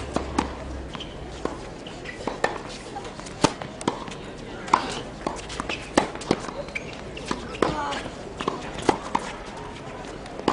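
Tennis rally on a hard court: sharp pops of racket strings striking the ball and the ball bouncing, the loudest hits coming about every second and a half.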